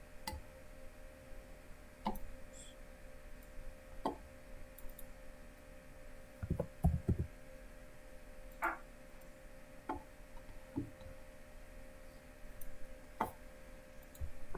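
Scattered computer mouse clicks, one every second or two, over a faint steady hum, with a brief cluster of duller knocks about seven seconds in.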